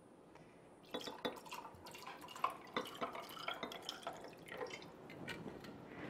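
Sparkling water being poured from a glass bottle into a jar glass of ice. It fizzes with many small crackles and clicks, starting about a second in.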